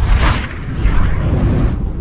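Animated logo-intro sound effect: a whoosh sweeping past over a deep rumbling boom, which starts fading near the end.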